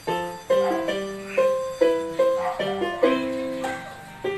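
A Casio CTK-560L electronic keyboard played with both hands: a run of single notes and chords, about two a second, each starting sharply and fading.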